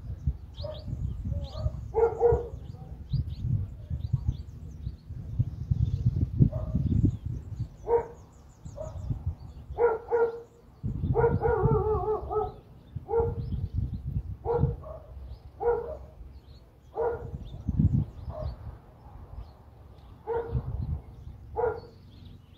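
A dog barking in short single barks, about one every second or two, with a longer wavering whine about 11 seconds in. Underneath is a low, gusty rumble, and small birds chirp faintly.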